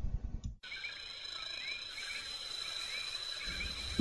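Quiet background: a faint hiss with a steady high-pitched tone and soft, short chirps now and then. A low pulsing sound before it cuts off abruptly just under a second in.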